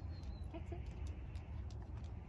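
A chicken clucking twice in quick succession, faint, over a steady low rumble of wind on the microphone.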